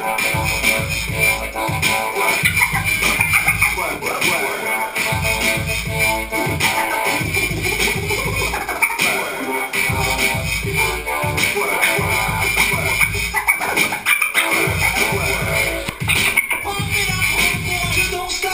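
Live hip hop DJ set played loud through a PA: a beat with a steady run of heavy bass kicks, with turntable scratching over it.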